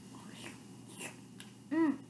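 A few faint clicks of a plastic spoon against a foam cup of rice, then a short voiced murmur near the end.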